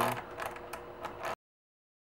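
Wrench tightening a bolt into a PVC fitting: a few light metallic clicks, then the sound cuts off abruptly about a second and a half in.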